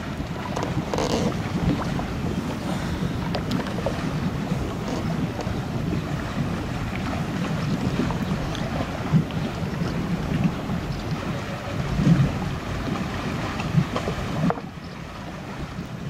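Wind buffeting the microphone over the low running of a motorboat, with water lapping around the hull. The noise drops off abruptly a little before the end.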